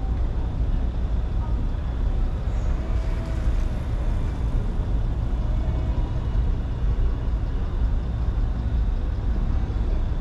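Steady low rumble of city traffic and idling vehicles while the car sits stopped at a red light.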